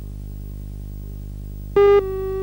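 A steady low hum, then near the end a sudden loud electronic beep: the start of a broadcast tape countdown leader's once-a-second beeps.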